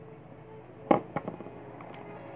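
Small plastic toy figurines being set down and knocked on a wooden floor: one sharp click about a second in, then a few lighter clicks.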